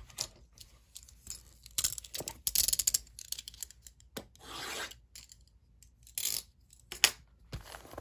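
A blade scraping and slicing through the shrink wrap on a cardboard trading-card box, in a series of short rasping strokes. The strokes come fast and closest together about two to three seconds in, then a few single strokes follow.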